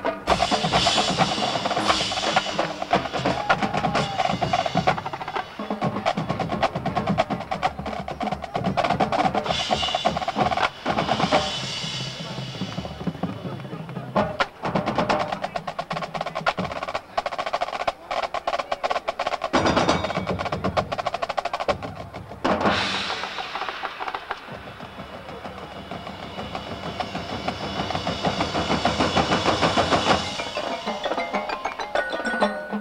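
Marching drumline playing: snare drums with rapid rolls and stick strokes over bass drums. The playing eases off for a few seconds late on, then builds back up near the end.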